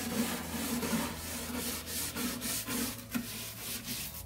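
Stiff-bristled hand scrub brush scrubbing the wooden side of a nightstand wet with Krud Kutter cleaner, in quick repeated back-and-forth strokes, about two to three a second.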